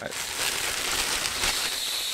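Clear plastic wrapping rustling steadily as it is pulled off a microphone stand.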